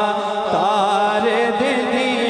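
Male voice singing a naat in a long, wavering, ornamented melodic line, held without a break, over a steady low drone.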